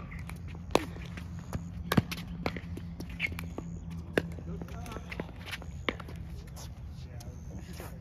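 Pickleball paddles hitting a plastic pickleball back and forth in a drill: a string of sharp pops at uneven intervals, about six in the first six seconds, the loudest about two seconds in.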